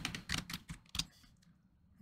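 A quick run of computer keyboard keystrokes, typing a node name into a search box, stopping about a second in.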